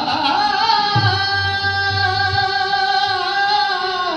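Live qawwali: a male voice holds one long, wavering sung note over harmonium accompaniment, stepping down in pitch at the very end.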